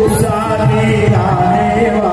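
Several voices chanting together in a sing-song melody over drumming, loud and continuous, as war music for a staged battle.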